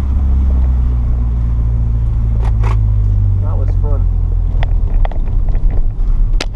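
Renault Sport Clio 182's four-cylinder engine running steadily, heard from inside the cabin, with a few short voice sounds midway and several sharp clicks near the end.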